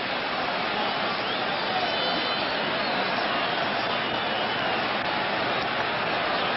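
Large ballpark crowd noise: a steady, dense roar of many voices, with faint whistles about two seconds in.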